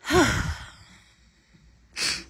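A woman sighing heavily close to the microphone: a breathy, voiced sigh that falls in pitch at the start, then a sharp breath near the end.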